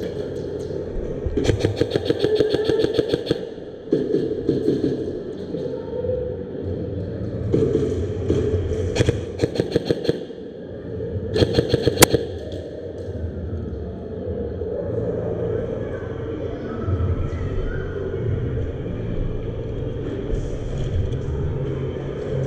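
Airsoft electric guns (AEGs) firing full-auto bursts of rapid clicks: one long burst of about two seconds early on, then several shorter bursts around the middle, over a steady low hum in a large hall.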